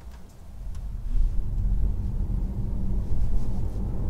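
Tesla Model 3 Performance pulling away from a standstill, heard from inside the cabin: a low rumble of road and drivetrain noise that builds over the first second and then holds steady as the car gathers speed.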